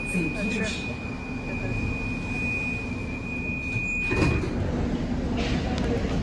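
Metro train stopped at a station: a steady low rumble and a thin high tone that cuts off about four seconds in. At that point a short burst of noise comes as the car's sliding doors open, and passengers step out onto the platform.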